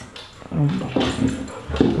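A dog vocalizing, an irregular noisy sound, with a woman's brief 'um' about half a second in.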